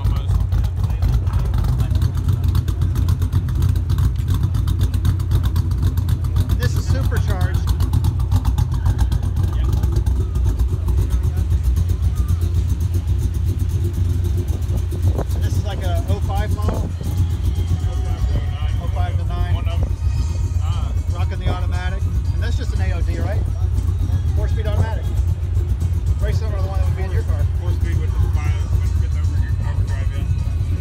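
A car engine idling close by with a steady low rumble. Voices come in over it in the second half.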